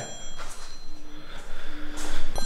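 A smartphone sounding with an incoming call: two short, steady low tones about a second apart.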